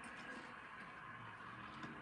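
Quiet room tone: a faint steady hiss with a low hum, and no distinct sound event.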